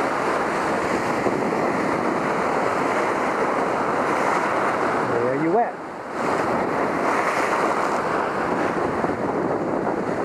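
Ocean surf breaking and washing over a rocky shoreline, with wind buffeting the microphone. Just past halfway comes a short rising whoop from a voice.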